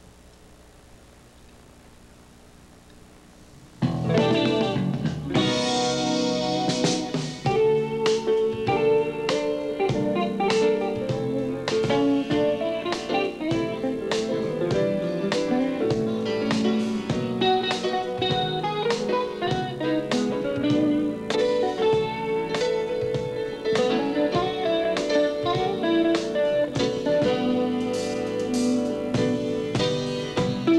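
After about four seconds of low hiss, a small jazz band starts an easy swing tune: archtop electric guitar playing the melody over drums, bass and piano.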